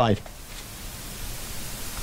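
The end of a spoken word, then a steady hiss of room tone and microphone noise during a pause in speech.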